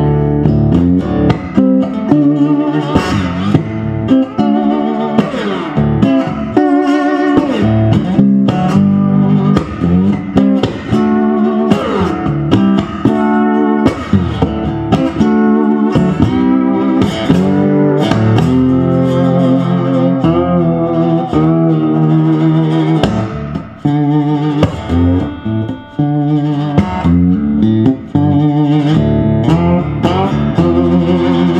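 A 1949 Supro electric lap steel guitar played with a slide in a blues improvisation: plucked notes that glide and bend in pitch, with sustained slurred phrases.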